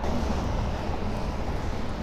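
Steady rolling rumble of inline hockey skate wheels on rough asphalt, an even noise without separate strokes.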